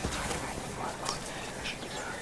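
An animal calling in the background over outdoor ambience, with a few soft clicks.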